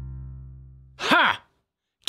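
Intro sting's held low musical tone fading out, followed about a second in by a short, breathy voiced exclamation that rises and then falls in pitch, then silence.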